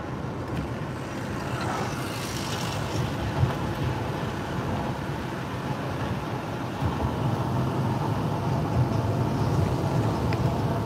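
Steady road noise inside a moving car: tyres on the road and a low rumble heard through the cabin.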